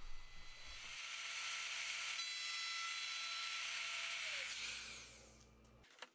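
Trim router running at speed with a steady high whine, then switched off about four and a half seconds in and winding down to a stop.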